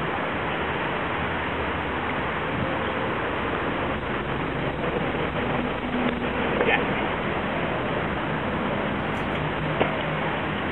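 Steady rushing noise, with faint voices now and then.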